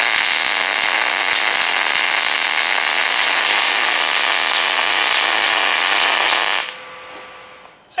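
Longevity ProMTS 200 MIG welder's arc running a bead on quarter-inch steel plate, weaving back and forth across a gap to fill it. The arc runs steadily for about six and a half seconds, then cuts off.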